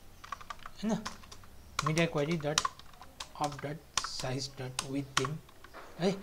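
Typing on a computer keyboard: irregular runs of quick keystrokes.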